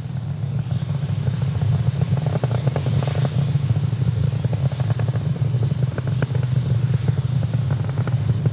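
SpaceX Falcon 9 rocket's nine Merlin first-stage engines during ascent, heard from the ground: a steady low rumble with irregular crackling.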